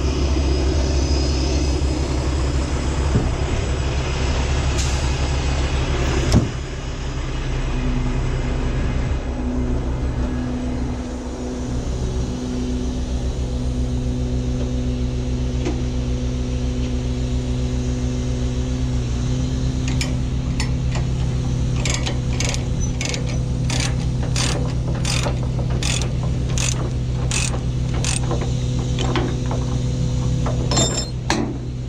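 Semi truck's diesel engine idling steadily, with a single thump about six seconds in. From about twenty seconds in, a ratchet chain binder on the trailer's tie-down chain is worked, giving evenly spaced clicks about twice a second as the chain is released for unloading.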